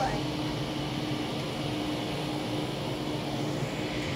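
Steady outdoor background noise with a faint, steady low hum throughout, and no single event standing out.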